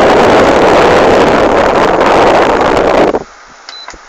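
Air from a Maspion wall fan blowing straight onto the phone's microphone: a loud, rough rush of wind noise that cuts off suddenly about three seconds in. A faint click and a short high tone follow.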